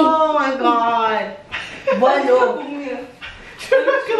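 Several young women laughing and exclaiming in high voices, in fits with short breaks.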